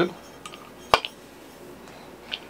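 A single sharp metallic click about a second in, with a faint tick before it: an allen key working the bolts of a resin printer's metal build plate.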